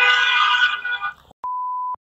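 A steady held note with many overtones fades out just over a second in. Then a short, pure electronic beep sounds once for about half a second.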